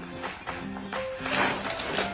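Background music with steady notes; about halfway through, a brief dry rustle as oat-and-fruit cereal crisps pour from their bag into a glass bowl.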